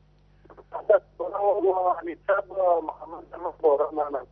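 A caller's voice heard over a telephone line, thin and cut off in the highs, starting to talk about half a second in, with a steady low hum underneath.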